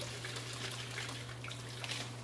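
Water dosed with clove oil sloshing in a small container as it is shaken by hand to mix the anesthetic, over a steady low hum.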